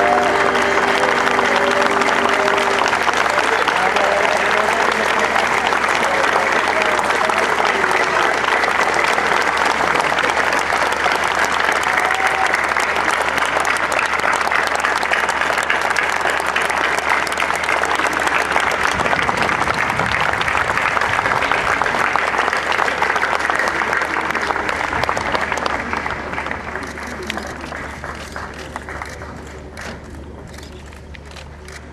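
A large crowd applauding steadily and at length, the clapping fading away over the last few seconds.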